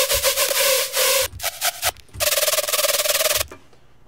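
Heavily distorted hard-trap synth patch from the Serum soft synth, a harsh buzzing note chopped by a fast LFO into a stutter like a crazy machine gun. It plays as two long notes with a few short stabs between.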